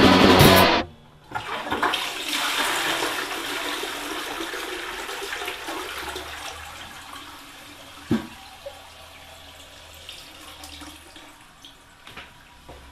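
Rock band music cuts off abruptly, then a toilet flushes: a loud rush of water that slowly fades away, with a single knock about eight seconds in.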